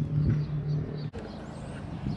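Steady low engine hum from a distant motor, with a short break about a second in.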